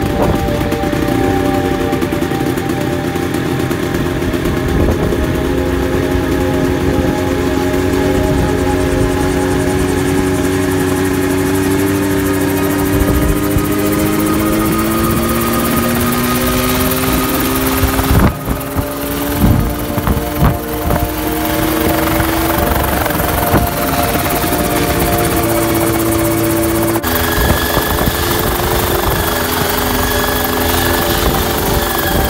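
Homebuilt single-seat helicopter running up: its engine and two-blade main rotor spin up, the engine note rising slowly and steadily in pitch for about twenty seconds. Around the middle a few brief, uneven bumps break in, and near the end the sound changes abruptly as the rotor keeps running.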